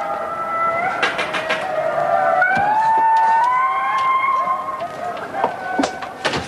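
Sound from a television playing a nature programme: long, held tones that glide and step slowly in pitch, with a few sharp clicks about a second in.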